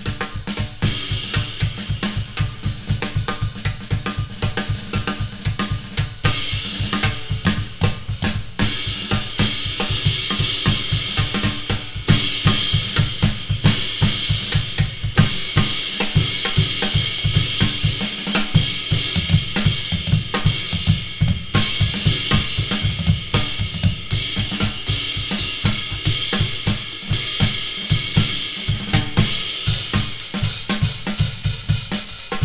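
Rockabilly band playing live with the drum kit loudest: snare, bass drum and cymbals keeping a fast, steady beat throughout.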